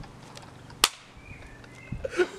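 A single sharp snap a little under a second in, over a low background.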